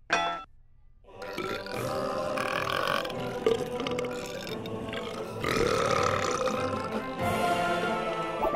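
Several cartoon voices burping together in a long, continuous chorus over music, from about a second in: a 'national anthem' performed as belches.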